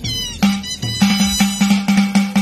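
Music with a steady beat, with a short meow-like cry at the start; from about a second in, the beat strokes come faster.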